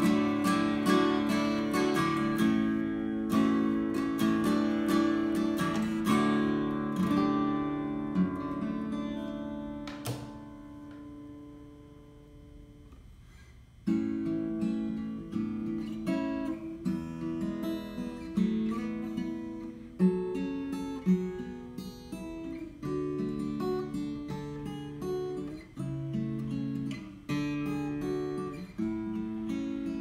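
1935 Martin OOO-45 acoustic guitar, Brazilian rosewood with a spruce top, played solo. The first passage ends about ten seconds in, its last notes left to ring and die away. A new passage of picked notes and chords starts about fourteen seconds in.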